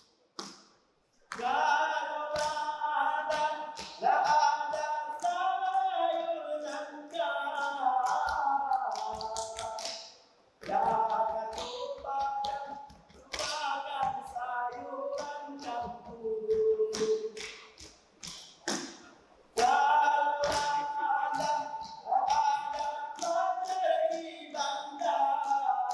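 Saman dance troupe singing in unison with no instruments while clapping and slapping their hands in a fast rhythm. The voices and claps break off into short silences about a second in and twice more, each time coming back in together.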